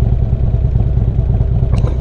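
Harley-Davidson Street Glide's V-twin engine running steadily while cruising, with wind noise on the helmet-mounted microphone.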